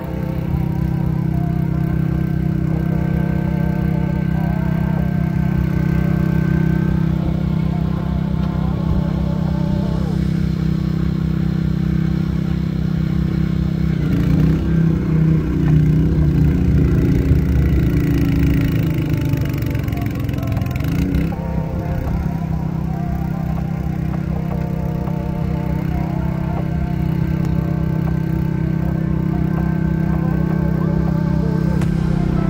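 A gas snowblower's engine runs steadily under load. Its sound swells in the middle and dips briefly in pitch before recovering, with background music playing over it.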